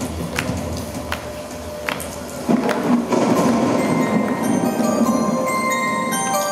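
Synthesizer intro played on a Korg Kronos keyboard: a low drone with sharp clicks at a slow, regular pace, then about two and a half seconds in a fuller, louder pad swells in and high bell-like notes begin.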